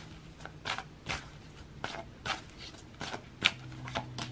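A deck of tarot cards being shuffled by hand: short, irregular card clicks and slaps, about two a second.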